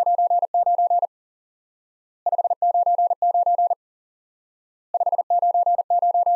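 Morse code '599' keyed at 40 words per minute as a single steady tone near 700 Hz, sent three times in quick groups of dits and dahs. The third group runs on past the end.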